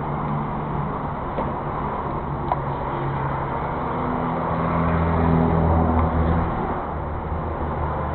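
Petrol pump dispenser running with a steady low hum while fuel flows into a motorcycle tank; the hum grows louder in the middle and stops about six and a half seconds in, as the fill finishes.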